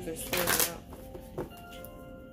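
A tarot deck being shuffled by hand. There is one loud rush of cards about half a second in, then a single sharp card snap, over faint steady held tones.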